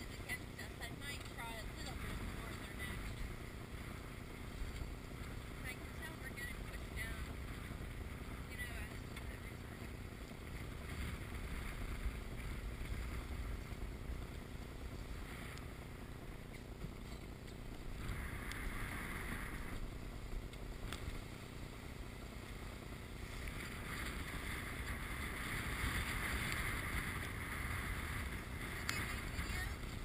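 Wind on the microphone and water rushing past the hull of a small sailboat heeled over and driving through choppy water, with louder rushes of water and spray about eighteen seconds in and again over the last several seconds.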